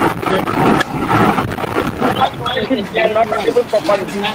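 Speech over a video call, muffled and distorted so that the words cannot be made out.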